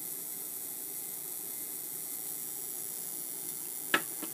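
Steady high-pitched hiss with a sharp click just before the end.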